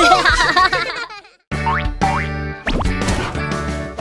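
Cartoon character voices laughing over light music, fading into a brief silence about a second in. Then an upbeat children's song intro starts, with two quick rising cartoon slide effects and a falling sweep.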